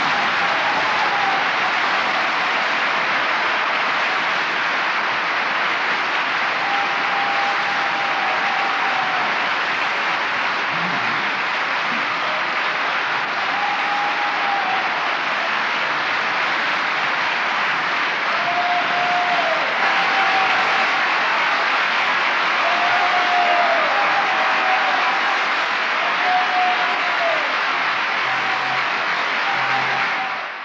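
Audience applauding steadily and loudly after an opera aria, with a few brief calls rising above the clapping.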